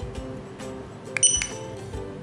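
Opticon OPR-2001 handheld barcode scanner giving one short, high-pitched good-read beep about a second in: the sign that it has decoded a Code 39 barcode and sent the data to the computer. Background music plays throughout.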